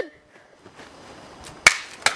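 A thrown cup striking something hard with one sharp crack about one and a half seconds in, breaking the cup.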